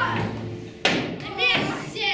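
The tail of a sung number dies away, then a single sharp thud about a second in, followed by a short shouted line.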